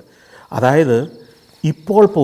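A cricket's steady, high-pitched trill, starting suddenly, with a man speaking over it in two short phrases.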